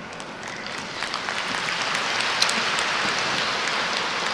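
Audience applauding, building up over the first two seconds and then holding steady.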